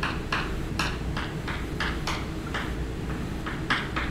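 Chalk writing on a blackboard: a quick, irregular series of short scratching taps, about three strokes a second, as letters are written.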